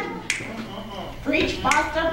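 A single sharp click about a third of a second in, then a voice speaking briefly in the second half.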